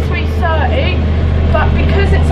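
Bus engine's steady low drone heard from inside the cabin, with talking over it.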